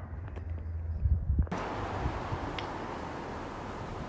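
Outdoor background noise: a low rumble of wind on the microphone with a few sharp handling clicks, then an abrupt switch about a second and a half in to a steady hiss.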